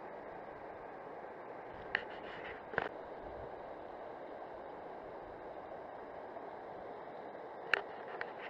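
Steady rush of a fast-flowing river, with two short clicks about two and three seconds in and another just before the end.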